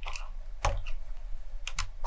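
Keycaps being worked off an FL Esports CMK75 mechanical keyboard with silent lime switches using a keycap puller: a few sharp plastic clicks. The loudest comes about two-thirds of a second in, and two come close together near the end.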